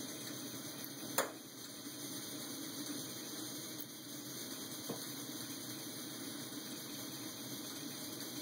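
MSR Whisperlite liquid-fuel stove burning isopropyl alcohol through its drilled-out kerosene jet: a steady, even low rushing from the burner. A single sharp click about a second in.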